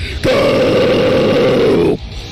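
A harsh metal vocal: one long, low guttural growl held for nearly two seconds, cutting off abruptly near the end.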